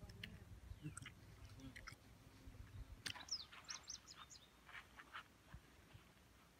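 Faint birdsong: a quick run of high, gliding chirps about halfway through, with a few more scattered chirps after. A faint low rumble sits under the first half.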